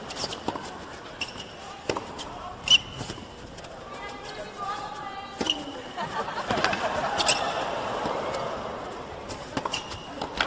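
Tennis rally on an indoor hard court: a string of sharp racket-on-ball strikes and ball bounces, with short squeaks of shoes on the court. Voices from the arena crowd rise in the middle.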